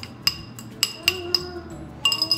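A metal spoon knocking and scraping against a bowl as sugar is tapped out of it: about five sharp, ringing clinks a quarter to half a second apart.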